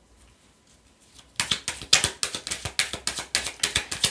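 Deck of oracle cards being shuffled by hand. After a nearly quiet first second and a half, a quick run of card clicks comes at several a second.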